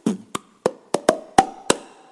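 Beatboxed vocal percussion: a run of sharp clicks made with the mouth, about three a second, each with a brief pitched ring.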